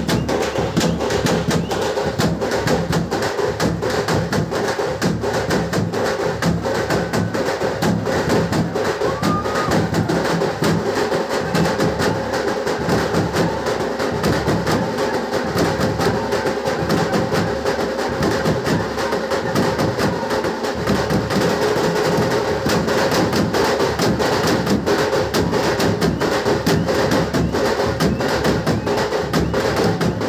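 A drum troupe beating large strap-hung drums in a fast, continuous rhythm of sharp strokes.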